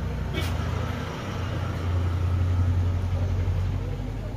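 A low rumble that swells louder in the second half, with one sharp click about half a second in.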